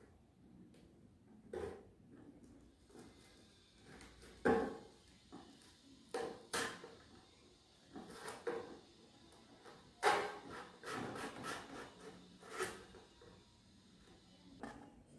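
Craft knife (cutter) cutting slits into a cardboard shoebox: separate short scrapes and rubs of blade and cardboard, coming closer together about ten seconds in.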